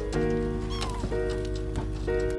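Background music of held chords that change every second or so, with a short rising-and-falling kitten mew just under a second in.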